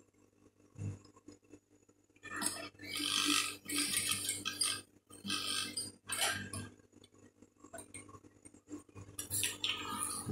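Fabric being folded and handled by hand, rustling in irregular bursts from about two seconds in until about seven seconds, with a little more rustling near the end.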